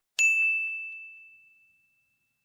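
A single bright bell-like ding, struck about a fifth of a second in and ringing out as it fades over about a second and a half: a logo chime sound effect.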